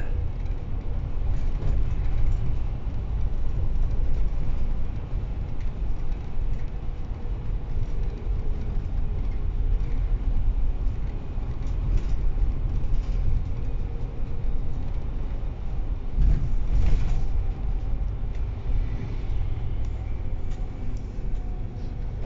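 On board a MAN DL 09 double-decker bus as it drives: a steady low rumble of engine and road noise. There is a brief louder burst of noise about sixteen seconds in.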